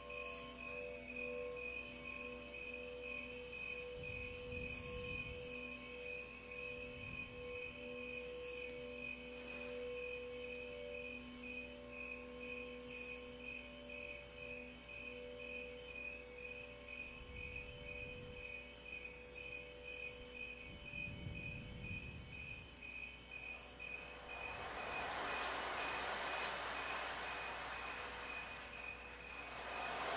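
Singing bowls ringing with sustained tones at several pitches, each pulsing slowly. About six seconds before the end, a soft rushing hiss swells up over them.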